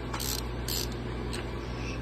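A few faint light clicks from metal drive parts being handled at a snowmobile's open chain case, over a steady low room hum.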